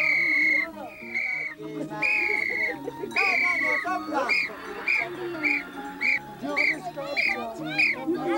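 A high-pitched flute playing a simple melody over lower accompaniment. It plays a few long held notes, then from about four seconds in switches to short repeated notes, about three a second.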